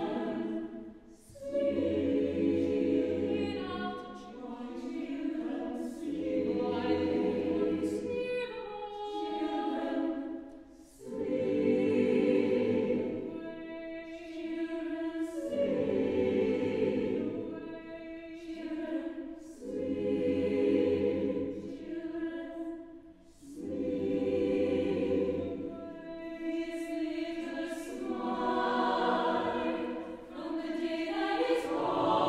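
Mixed chamber choir singing a contemporary choral work in long held chords, the phrases swelling and fading every few seconds.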